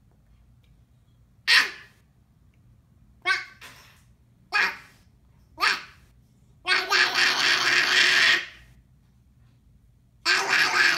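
A toddler's vocalizing and laughter: four short loud cries or laughs spaced a second or so apart, then a longer pitched laugh about seven seconds in.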